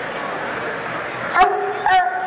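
A dog barks twice about half a second apart, the second bark drawn out longer, over a steady murmur of crowd voices.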